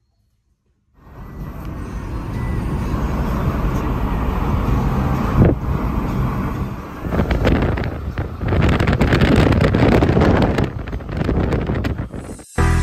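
Rushing road and wind noise from a moving car, with a heavy low rumble that swells and dips. It starts suddenly about a second in, after silence.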